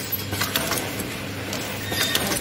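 Automatic pouch packing machine running while it fills a strip of snack pouches: a steady low hum with irregular sharp clicks and clinks from its mechanism.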